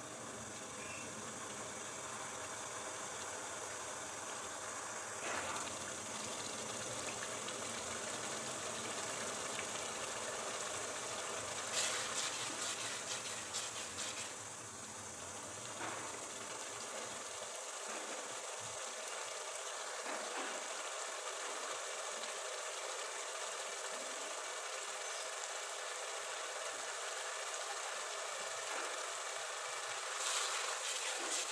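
Urad dal sizzling in oily tomato masala in a pot on the stove, a steady hiss while it is sautéed (bhuna) before water is added. There is a brief patch of clicks and crackles about twelve seconds in, and more near the end.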